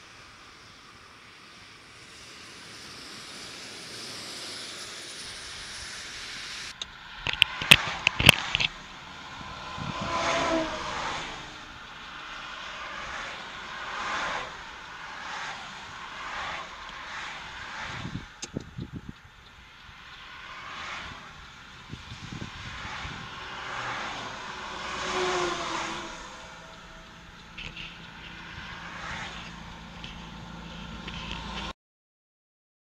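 Highway traffic passing close by, one vehicle after another every couple of seconds, some with a falling pitch as they go past. A cluster of sharp clicks comes about seven to eight seconds in, after a steady rushing noise at the start.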